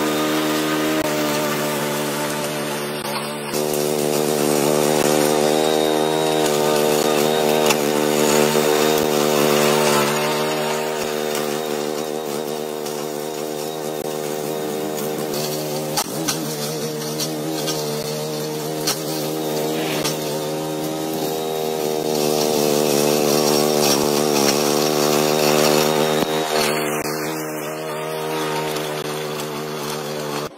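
Small gasoline engine of a piece of lawn equipment running steadily at high speed, its pitch holding nearly constant with only slight swells in loudness.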